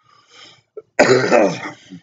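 A man clearing his throat: one loud, rough burst about a second in, lasting under a second.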